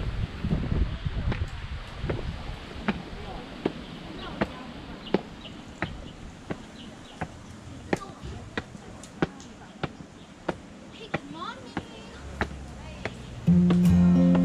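Footsteps climbing concrete stairs, one step about every 0.7 seconds, with faint voices in the background. Music starts abruptly near the end and becomes the loudest sound.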